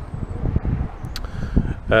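Wind buffeting the microphone in a low, uneven rumble, with a faint tick about a second in.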